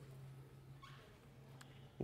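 Near silence over a steady low hum: chalk drawing on a blackboard, with one faint, brief rising squeak about halfway through and a faint tick near the end.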